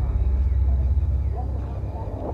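A low, steady rumble, with faint voices in the background.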